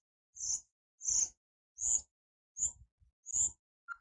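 Footsteps at a walking pace, five short scuffing steps each with a dull thud, about three-quarters of a second apart.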